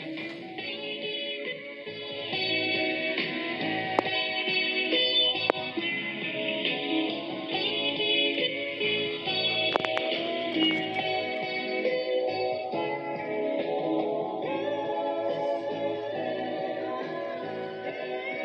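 A song with guitar playing through the speaker of a vintage tube table radio, the sound thin, with little deep bass or high treble.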